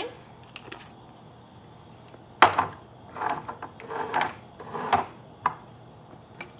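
Kitchen containers and utensils being handled at the stove: a sharp knock about two and a half seconds in, a few short scuffles, then a clink that rings briefly near the five-second mark and one more knock.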